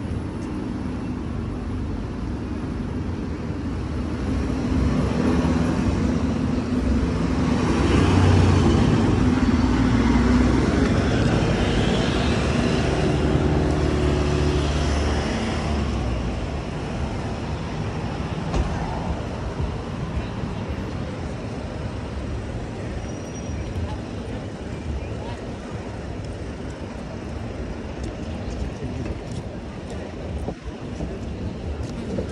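City street traffic, with a heavy vehicle's engine running close by; it swells from about four seconds in, is loudest around eight to eleven seconds, and fades away after about sixteen seconds.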